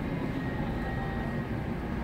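Steady low rumble of a big-box store's background noise and air handling, with a faint high steady tone running through it.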